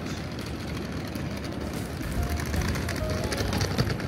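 Busy city street ambience: a steady low rumble, like traffic, that grows louder about halfway through, under faint music.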